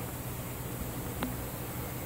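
A steady low hum under an even hiss, with one faint click a little past a second in.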